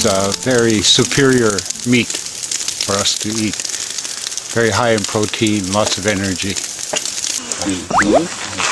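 A man talking in several short phrases over the continuous sizzle and crackle of buffalo steaks grilling on a grate over a wood fire.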